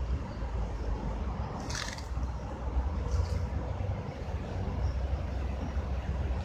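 A steady low outdoor rumble, with a short papery rustle about two seconds in and a fainter one a second later, as the pages of a book are leafed through.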